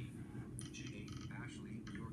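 Quiet, rapid synthetic speech from the iPhone's VoiceOver screen reader reading out screen items, over a steady low hum.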